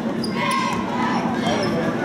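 Basketball dribbled on a hardwood gym floor over the steady murmur of a crowd talking in the stands.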